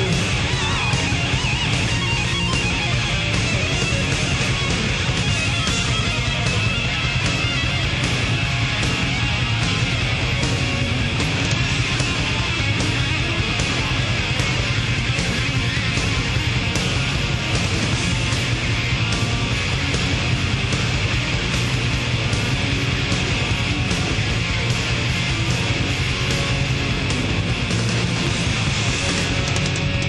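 Hard rock music: an instrumental passage without vocals, led by electric guitar over a steady drum beat.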